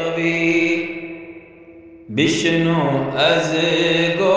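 A man's voice chanting a slow devotional melody: a long held note fades away, and a new wavering phrase begins about halfway through.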